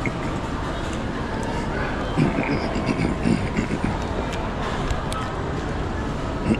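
Busy shopping-mall ambience: a steady low rumble with indistinct voices of people around, a short patch of nearby talk in the middle.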